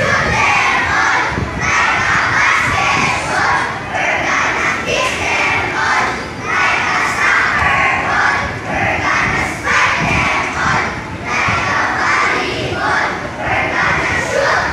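A group of young boys shouting a team cheer together, chanted in short rhythmic phrases about a second apart.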